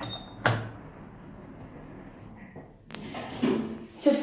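Stannah lift car's platform button pressed with a short beep, then a sharp knock about half a second in and another click near three seconds in as the lift's doors start to close.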